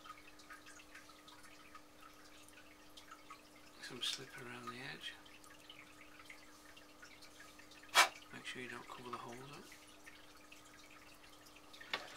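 Toothbrush scrubbing wet clay slip onto the scored edge of a leather-hard clay teapot body, a soft wet brushing and dabbing that prepares the joint for the spout. A sharp tap about eight seconds in, over a steady low hum.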